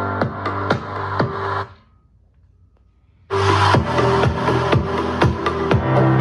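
Electronic dance music with a steady beat of about two hits a second, played through a portable Bluetooth speaker. The music cuts out for about a second and a half just under two seconds in, then comes back at full level.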